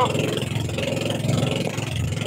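Engine of a motorized outrigger fishing canoe running steadily under way, a fast even pulse with the rush of water and wind over it.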